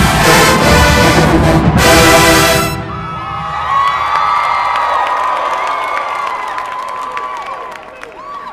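A large marching band's brass section playing loud and full, then cutting off sharply about two and a half seconds in. A crowd cheering and shouting follows and slowly fades.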